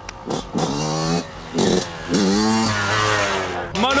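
Yamaha YZ125 two-stroke dirt bike revving hard as it accelerates, with people shouting over it.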